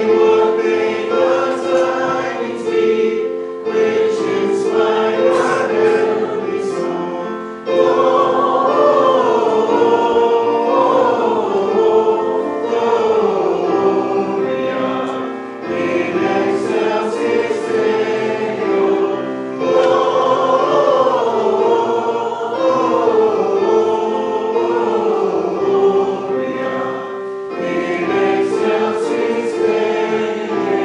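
A congregation singing a hymn with keyboard accompaniment, in long sustained phrases with short breaks between them.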